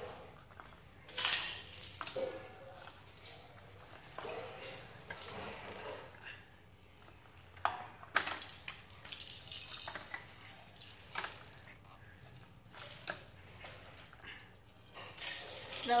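Hard plastic toy building pieces clicking and rattling as they are handled and pressed onto a stacked tower, in irregular short clatters.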